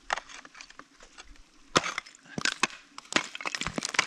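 Ice-climbing tools striking a frozen waterfall: a series of sharp cracking hits as the picks bite and chip the ice, the loudest just under two seconds in.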